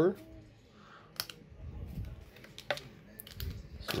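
Handling noises from plastic blister packaging and card packs: a few sharp, separate clicks and taps over soft, low rustling.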